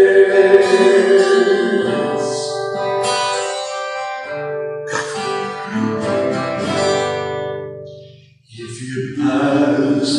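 A woman singing a worship song to acoustic guitar accompaniment, in phrases. About eight and a half seconds in there is a brief break before the next phrase starts.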